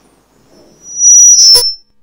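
Microphone feedback through the PA: a loud high-pitched squeal lasting under a second, with a sharp knock from the microphone being pulled out of its stand clip near its end.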